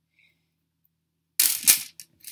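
A metal chain necklace clattering and jingling as it is set down on a plastic tray: one short clatter near the end.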